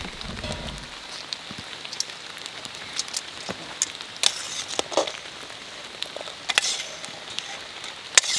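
Metal utensils stirring the thick chowder in an open camp pressure cooker, with a few sharp clinks against the pot, over a steady background hiss with scattered crackles.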